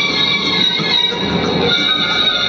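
Karaoke backing track playing an instrumental passage with no singing, its high notes held steady over a busy accompaniment.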